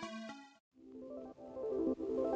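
Background music: one track fades out in the first half second, a brief silence follows, then a new track with a repeating melody starts.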